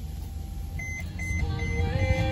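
Low rumble of a van's running engine, heard from inside the cab. About a second in, a series of short, high electronic beeps starts, about three a second.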